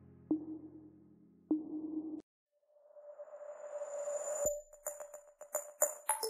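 Background music. A soft electronic track with a held chord and plucked notes cuts off about two seconds in. After a brief silence a rising swell leads into a new electronic track with a quick clicking beat and bright high tones.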